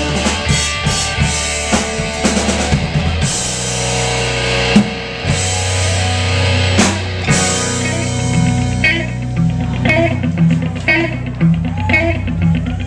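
Live rock band playing loud: distorted electric guitar chords over a drum kit with cymbals and two hard accents. About nine seconds in the cymbals drop out and the guitar carries on with a repeating figure over low notes.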